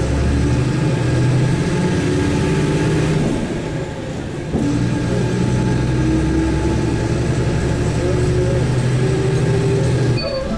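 Engine and road noise of a moving vehicle, heard from inside the cabin: a steady low hum over rumble. The level dips briefly about four seconds in, then comes back up.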